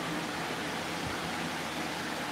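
Steady hiss with a faint low hum: background room noise, with nothing happening in it.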